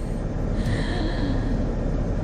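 A woman's soft, breathy laugh over a steady low rumble inside a car.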